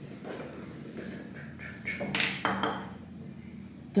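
A few light knocks and clinks as a small bottle of body shimmer is handled and picked up, over a faint steady hum.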